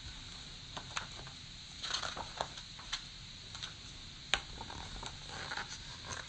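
Picture book being handled and its page turned: faint paper rustles and scattered light clicks.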